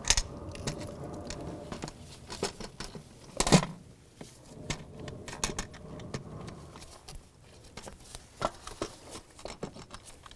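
Plastic oil filter housing being set down onto a Chrysler 3.6 V6 engine block, with scattered small clicks and scrapes of plastic against metal and one louder knock about three and a half seconds in.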